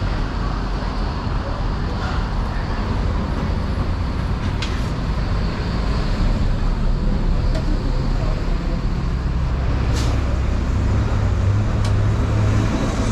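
Street traffic noise: a steady low rumble of road vehicles that grows louder in the second half, with voices in the background.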